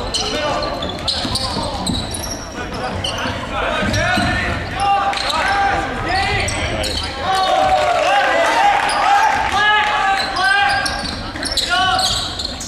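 Live basketball play in a gym: a basketball bouncing on the hardwood court while players and spectators shout and talk throughout.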